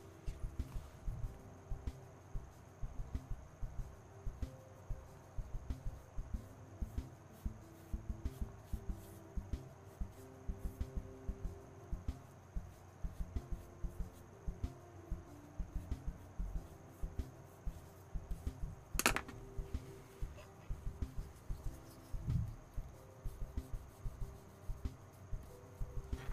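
Paintbrush dabbing and stroking acrylic paint onto the painting in quick, irregular light taps. There is a single sharp click about nineteen seconds in.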